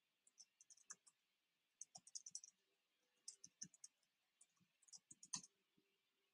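Faint typing on a computer keyboard: four short runs of quick key clicks, entering an email address and password.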